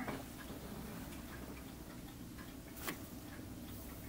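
Quiet room tone with faint ticking throughout, and one small click about three seconds in.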